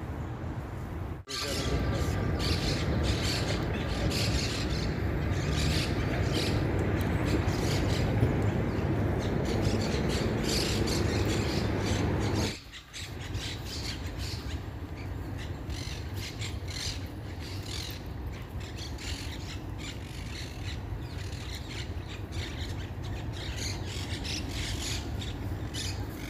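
City traffic ambience, a steady low rumble of passing cars, for the first half. After a sudden drop about halfway through, a quieter distant city hum with birds calling repeatedly over it.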